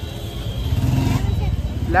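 Steady low rumble of a motor vehicle engine running close by, with faint indistinct voices about a second in.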